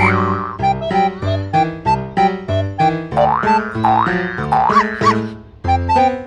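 Playful children's background music: a bouncy piano or keyboard tune on an even beat. Springy 'boing' sound effects slide up and down in pitch a few times through the middle, and the music breaks off briefly just before the end.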